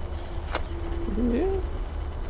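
Steady low rumble of wind on a handheld microphone, with a single click about half a second in. Over it a man draws out a hesitant 'I…' that dips and then rises in pitch.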